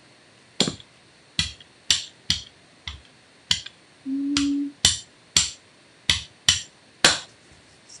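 Rubber brayer working acrylic paint on a mini Gelli gel printing plate: about a dozen sharp, irregularly spaced clicks and knocks, with a short low hum about halfway through.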